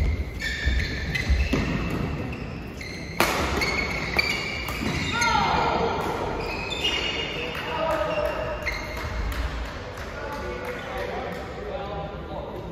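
Badminton rally in a large hall: court shoes squeak on the floor, feet thud, and a sharp racket hit on the shuttlecock comes about three seconds in. Then a voice cries out once, and voices talk as play stops between points.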